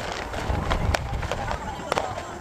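Distant aerial fireworks going off, with several sharp pops and cracks spread over the two seconds. People's voices are talking underneath.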